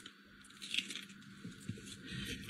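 A person biting into a taco and chewing, faint, with a few small soft crunches.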